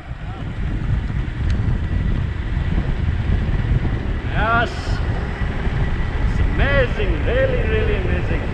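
Wind buffeting the microphone in a steady low rumble while riding along a road. A man's voice calls out briefly about halfway through and twice near the end.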